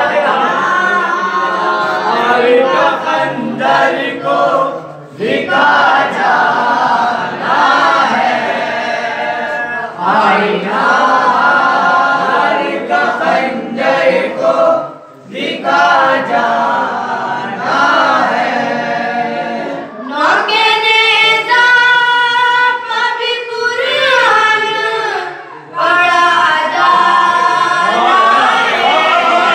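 Boys' voices singing a noha, a Shia mourning lament, in unaccompanied group chant. The lines come in phrases with short breaks between them.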